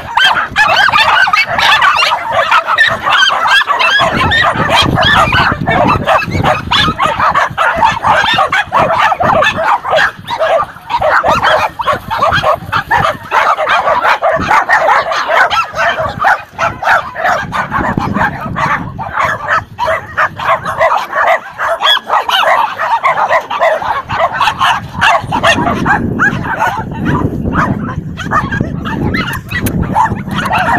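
Many penned small dogs barking and yapping at once in a continuous, overlapping din that never lets up.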